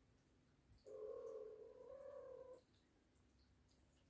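A domestic cat gives one long, drawn-out meow that starts about a second in and lasts under two seconds, its pitch wavering slightly.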